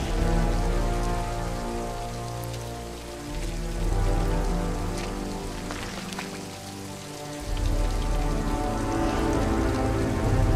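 Heavy rain falling steadily, mixed with a film score of held, low orchestral tones. The low notes fade out about three seconds in and again around seven seconds, then swell back in.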